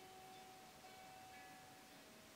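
Very faint ambient meditation music: one long held tone with a few short, soft higher notes over it.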